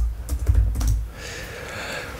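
Several soft clicks in the first second, then a soft, even hiss.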